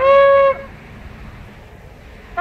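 A shofar sounded in a short blast: the note steps up from a lower pitch to a held tone and stops about half a second in, leaving a pause with only faint background noise.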